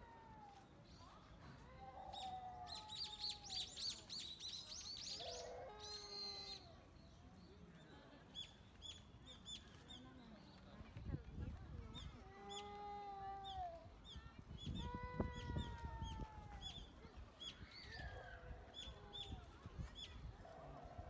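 Outdoor birdsong: small birds chirping over and over, with a quick burst of rapid high calls a few seconds in, amid drawn-out calls or distant voices. A low rumble rises in the middle.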